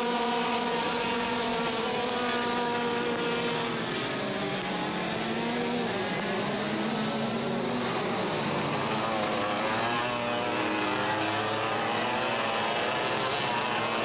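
Several IAME X30 125cc two-stroke racing kart engines running at race pace, their overlapping notes rising and falling as the karts brake and accelerate through corners.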